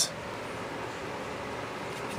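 Steady, even background noise with no distinct event: workshop room tone.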